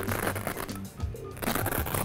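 Background music, with rustling from the flexible LED panel and its fabric diffuser being handled and pulled from the frame, starting past the middle.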